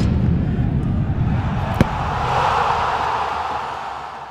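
Sound design for an animated logo ident: a deep rumbling swell with a single sharp hit a little under two seconds in, then a brighter rushing noise that fades away near the end.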